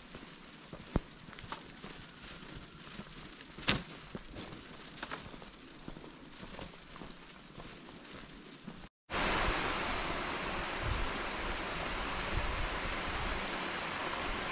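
Faint outdoor ambience with a few scattered sharp clicks and ticks. After a cut about nine seconds in, a steady, louder rushing hiss with low rumble: wind blowing over a small camera microphone while cycling.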